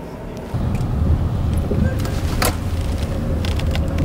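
Car engine and road rumble heard inside a patrol car's cabin as it drives, starting about half a second in, with a few light clicks along the way.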